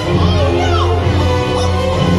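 Show soundtrack music played over loudspeakers: sustained chords with a heavy bass, with high gliding voices heard over it.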